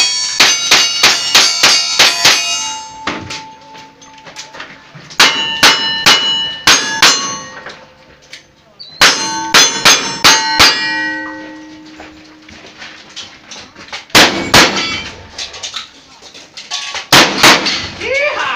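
Gunfire on a cowboy action stage, with steel targets ringing after the hits: a fast string of about ten lever-action rifle shots at the start, then two strings of about five revolver shots. Near the end come a couple of single heavier shots and a quick group of three or four, from a shotgun.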